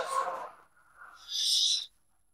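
Dramatic transition sound effects: a loud sound cut off at the start and fading within half a second, then near silence, then a short high-pitched shimmer about one and a half seconds in that stops abruptly.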